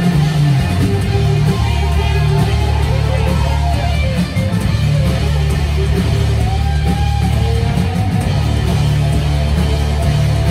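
Live rock band playing loud: distorted electric guitar lines gliding in pitch over a heavy, sustained bass and drums.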